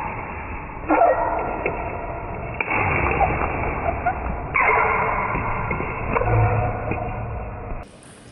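Table tennis rally in a reverberant sports hall: light knocks of the ball, with three sudden louder sounds about one, two and a half and four and a half seconds in, each ringing on in the hall. The sound is muffled, with the high end cut off.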